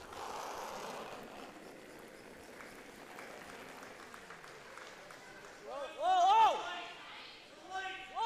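Brooms sweeping hard on the ice in front of a sliding curling stone, a steady brushing. About six seconds in comes one loud, drawn-out shouted call from a player that rises and falls in pitch.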